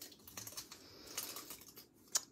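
Faint, irregular crinkling and small clicks of thin die-cut cardstock as adhesive-sheet backing is peeled off it by hand, with a few sharper ticks in the second half.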